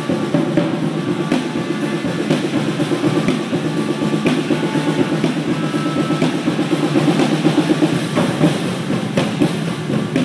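Two drum kits played together in a dense, fast, unbroken roll, with brighter cymbal strokes coming in near the end.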